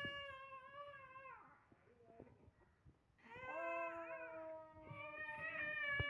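Infant crying in long, held wails. One cry falls away about a second and a half in, and after a short pause more wailing starts around the halfway point and goes on.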